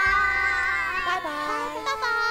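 Several high-pitched voices making drawn-out, wordless calls that hold and glide in pitch, with a brief break near the end.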